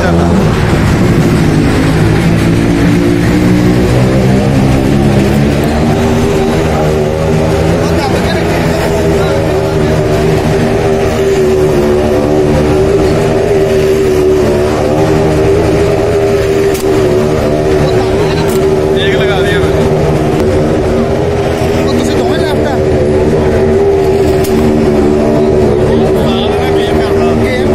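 A loud engine running steadily at an almost constant pitch, with voices mixed in.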